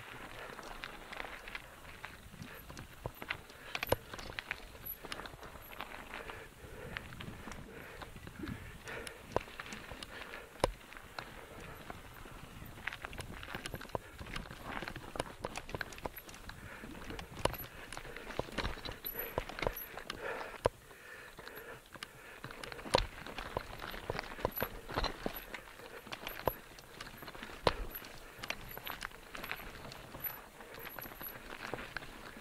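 Mountain bike rolling over a rough dirt trail: tyres on dirt and gravel under a steady rustle, with the bike rattling and many irregular sharp knocks as it goes over stones and bumps.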